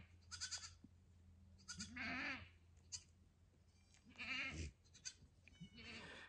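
Goats bleating faintly, three calls a couple of seconds apart.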